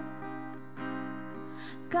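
Acoustic guitar strummed softly between sung lines, its chords ringing on, with a fresh strum a little under a second in.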